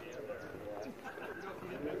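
Indistinct conversation: people talking in the background, too faint for the words to be made out.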